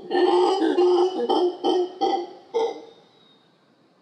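Howler monkey calling: one longer call, then several shorter pulsed calls in quick succession, stopping about three seconds in.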